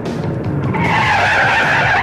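TV show ident: a racing car sound effect over music, growing louder about a second in and cutting off suddenly at the end.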